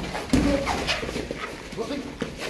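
Boxing sparring: a few sharp smacks of gloved punches, mixed with short grunting and laughing vocal sounds from the fighters.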